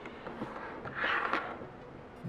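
Handling noise from paracord and a wooden bracelet jig being moved on a tabletop: a short rustling scrape about a second in, with a few small clicks.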